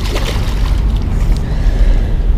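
Low wind noise buffeting the camera microphone, with a burst of water splashing near the start as a hooked smallmouth bass thrashes at the surface.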